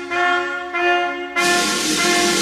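Wind band playing held brass chords in short phrases. About two-thirds of the way through, a sudden loud crash with a hiss spread across the whole range comes in over the band and rings on.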